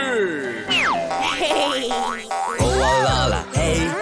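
Cartoon sound effects over music: a falling whistle-like glide, then a run of quick rising sweeps, then springy boings as a bouncy backing track with a bass beat comes in about two and a half seconds in.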